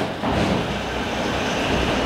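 Steady rumble and hiss of a passing vehicle.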